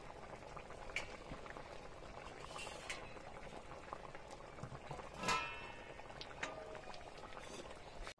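Milk-based bata fish curry boiling hard in a metal karai (wok) over a wood fire, a steady bubbling with small pops. One brief, sharper sound stands out about five seconds in.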